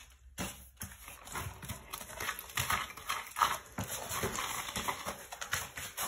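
Irregular light knocks and scuffs as paper rags are pushed by a gloved hand into a PVC toilet drain pipe in the floor, after a brief quiet moment at the start.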